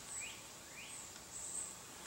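Faint summer outdoor ambience: a high, thin insect buzz that comes and goes, with two short rising chirps in the first second.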